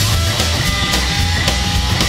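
Live rock band playing an instrumental passage without vocals: electric guitar held notes over upright double bass and drum kit, steady and loud.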